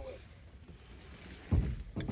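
Quiet background noise, then a dull low thump about one and a half seconds in.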